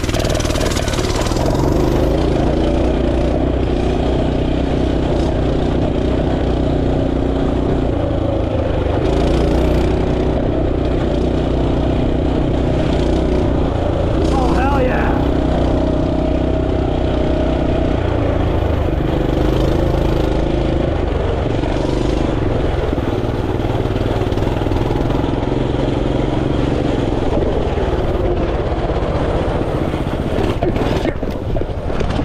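Dirt bike engine running under way, its pitch rising and falling every few seconds with throttle and gear changes.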